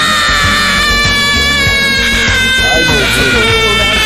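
Gohan's Super Saiyan 2 scream from Dragon Ball Z, in the Greek dub: one long, high, strained scream held on a nearly steady pitch that sags slowly, over the anime's music.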